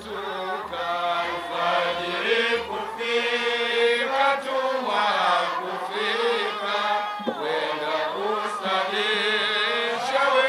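A men's group chanting a qaswida (Swahili Islamic devotional song) together, the voices amplified through a microphone. A low regular beat runs under the first three seconds.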